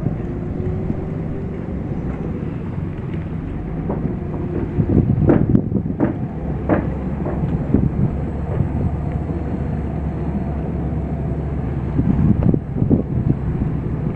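Wind buffeting the microphone over a steady low rumble, with a few brief knocks here and there.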